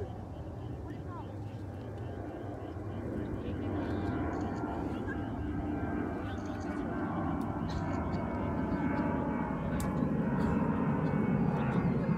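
Airliner flying overhead: a steady engine rumble that grows gradually louder as it comes nearer.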